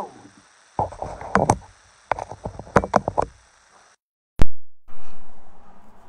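Handling noise: two runs of sharp knocks and clicks, then a moment of dead silence broken by one loud sharp pop, typical of an edit or restart in the recording.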